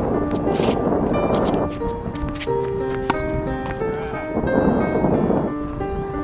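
Background electronic soundtrack music with sustained held notes and two swelling rushes of noise, the second about four and a half seconds in.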